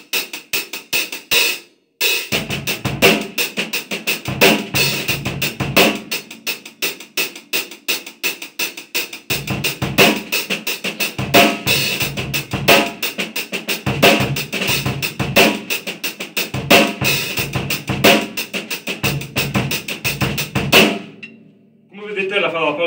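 Acoustic drum kit playing a funk groove: bass drum and snare backbeats filled in with snare ghost notes, over a sixteenth-note feel that sits between straight and shuffled. A few strokes and a short break come first, then the groove runs steadily and stops shortly before the end, leaving the kit ringing.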